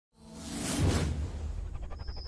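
Whoosh sound effect from a logo intro sting: it swells in from silence, peaks just under a second in and fades out, over a steady low bass, with a few quick ticks near the end.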